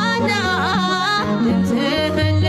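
An Ethiopian Orthodox hymn (mezmur) playing: a single voice sings a melismatic line whose pitch bends and wavers on held notes, over steady sustained low notes.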